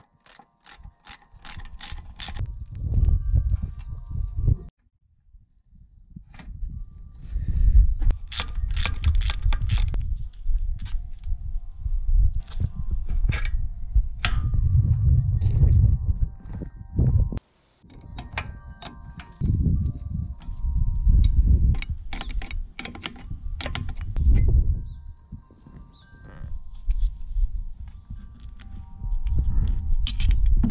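Hand tools working on a mini excavator's steel boom as it is taken apart: repeated ratchet clicking, metal-on-metal clanks and short ringing tones from the steel parts.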